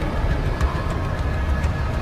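Soundtrack of an animated logo intro: a heavy, deep rumble with a faint held tone above it and a few light ticks scattered through.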